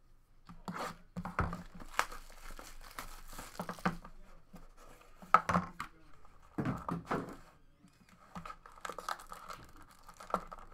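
Shrink-wrap being torn and crinkled off a sealed hobby box of trading cards, a run of crackles and sharp handling clicks with the loudest snap about five seconds in.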